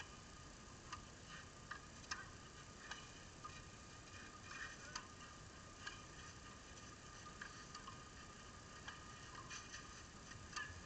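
Faint, sharp pops of tennis balls being struck by rackets, about a dozen at uneven gaps, heard over a low hiss.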